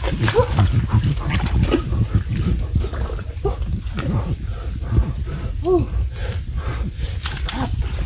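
A man grunting in several short, effortful bursts and breathing hard as he climbs through mangrove branches. Underneath runs a constant low rumble with rustling and knocks from the climbing.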